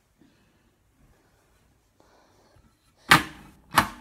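Two loud, sudden knocks about 0.7 s apart near the end, after a mostly quiet stretch.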